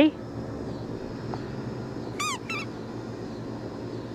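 German Shepherd puppy giving two short, high-pitched whines about two seconds in, eager for the ball to be thrown.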